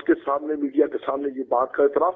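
Speech only: a man talking in Urdu without a break, sounding thin and narrow like a voice over a phone line.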